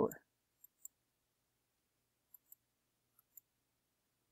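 Faint computer mouse clicks, three quick pairs, each a press and release, spread over a few seconds.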